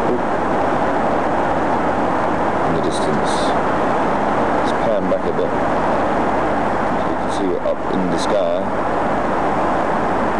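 Airliner cabin noise in flight: a steady, loud rush of engines and airflow, with faint snatches of voices in the cabin a few times.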